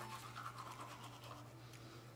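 Faint scrubbing of a manual toothbrush on teeth: soft, closely repeated brushing strokes.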